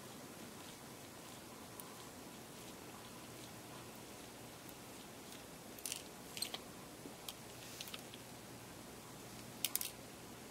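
Faint, scattered small clicks and ticks of a precision screwdriver turning out a tiny screw from a Canon 60D's mode-dial detent plate, with a louder quick cluster of metallic clicks near the end as the notched metal plate comes free.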